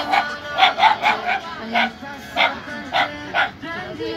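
A dog barking repeatedly in short, sharp barks, about two a second, over background music.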